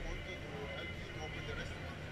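Busy trade-show hall: a steady din of many overlapping voices.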